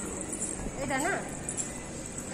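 A person's voice saying a short phrase about a second in, over a steady background hum and high hiss.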